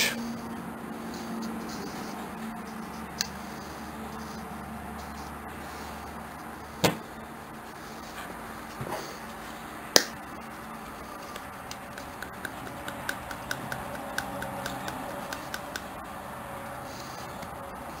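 Quiet handling of rusty pliers, with a few sharp clicks and a slightly longer short burst about seven seconds in, then a run of faint quick ticks near the end.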